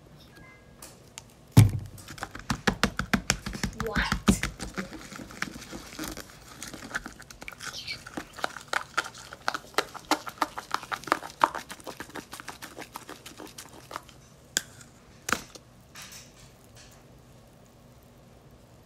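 A spoon stirring sticky, freshly activated slime in a small plastic cup: rapid wet clicks and crackles for about ten seconds, opening with a sharp knock about a second and a half in, then thinning to a few separate clicks near the end.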